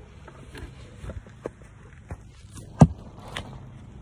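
Handling noise from a phone being moved and propped in place: scattered small knocks and rustles, with one sharp knock near three seconds in.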